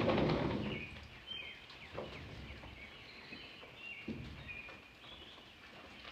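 Birds chirping outdoors with many short, high calls. A loud rustle fills the first second, and there are a couple of soft thumps later on.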